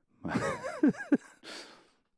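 A man's wordless, sigh-like vocal sound into a close microphone, its pitch wavering up and down for about a second, followed by a breathy exhale.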